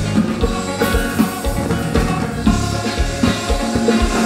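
Live kompa band playing with drums and electric guitar over a steady, regular beat.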